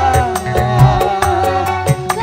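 Live band music with a man singing into a microphone through a PA. He holds one long note over a steady drum beat of about four strokes a second, with bass underneath.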